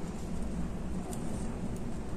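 Quiet room tone: a low steady hum, with a couple of faint light ticks about a second in and near the end.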